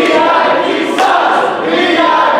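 Wrestling crowd chanting loudly in unison, with a sharp crack about halfway through.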